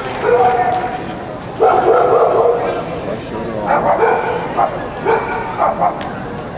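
A dog barking and whining in several separate bursts, some of them drawn out for about a second.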